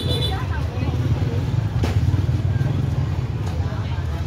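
Busy street-market ambience: a steady rumble of motorbike engines with people talking in the background, and a single sharp click about two seconds in.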